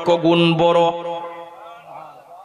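A man's chanting voice in the sung style of a Bangla waz, amplified through microphones, holding one long note that fades out about halfway through with an echoing tail.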